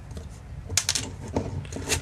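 Small clicks and rubbing as hands work a hex driver on the screws of a carbon-fibre FPV drone frame. There are sharp clicks about three-quarters of a second in, at about a second and a half, and again near the end.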